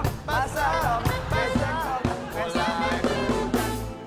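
A song: a voice singing a melody over a band backing track with drums.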